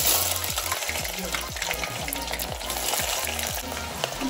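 Sliced onions dropped by hand into hot oil in an aluminium pot, the oil sizzling and spattering loudly as they hit. The sizzle starts suddenly and stays steady.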